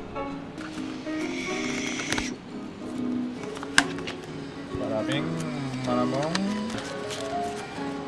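Background music with a voice in it, and one sharp click a little under four seconds in.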